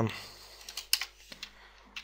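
A few separate computer keyboard keystrokes, one about a second in and others near the end.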